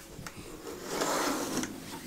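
Net curtain being drawn open along its rail: a soft rustling slide that builds about half a second in and fades near the end.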